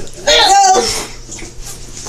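A child's voice: one loud, high-pitched cry lasting about three quarters of a second, starting about a quarter second in.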